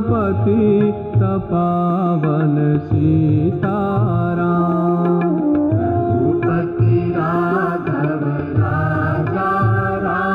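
Hindu devotional bhajan music: a Rama naamaavali bhajan, its melody running continuously with bending, ornamented pitch.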